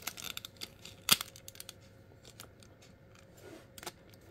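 Plastic parts of an MFT F-03 SolarHalo transforming robot toy clicking as they are handled and folded, with one sharper click about a second in.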